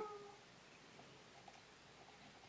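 Near silence: room tone, opened by a brief click and a short squeak-like tone that fades within half a second.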